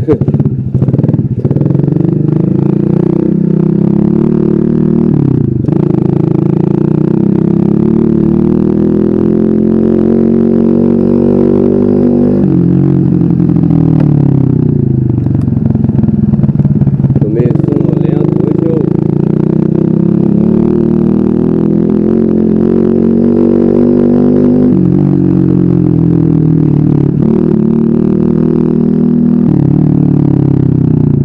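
Small four-stroke engine of a Mobilete 4T moped-style motorcycle running under way. Its pitch climbs and drops back sharply four or five times as the rider accelerates and eases off. A chain tensioner has just been fitted to stop the chain slapping.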